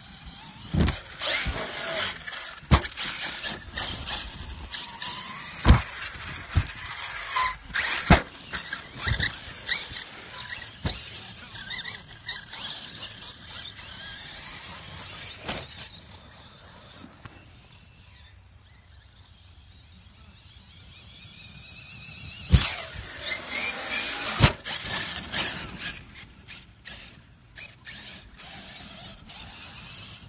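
Radio-controlled cars' motors whining as they speed up and slow down across the grass, with a number of sharp knocks from jumps, landings or bumps. The sound goes quieter for a few seconds after the middle, then the whine rises again with two loud knocks.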